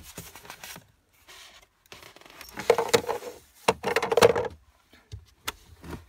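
Plastic tabs of a cabin air filter access cover being pried and popped out by a gloved hand: plastic scraping and rustling in two louder bouts midway, with a few sharp clicks.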